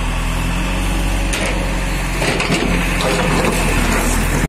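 Engine of an excavator at a road-works dig running steadily at a low, even speed, with a few short knocks of broken concrete and stone about a second and a half in and again past the middle.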